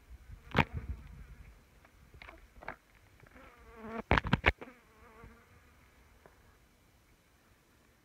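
Bush flies buzzing close to the microphone, the buzz rising and falling in pitch as they pass. Several sharp knocks come about half a second in and again in a quick cluster around four seconds.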